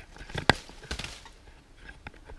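A single sharp knock about half a second in, followed by a few faint taps and clicks.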